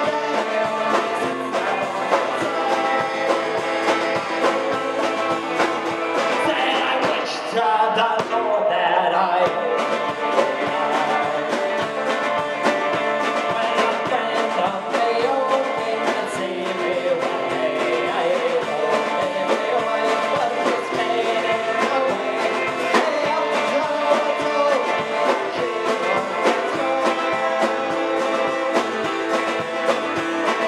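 Live band music: a man sings lead vocals over an electric guitar at a steady beat.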